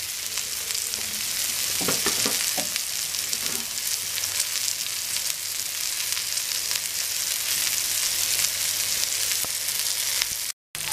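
Corn-flour-coated fish pieces shallow-frying in a little oil in a flat pan, making a steady sizzle with fine crackling.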